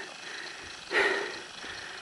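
A single heavy exhale close to the microphone about a second in, over a steady background hiss.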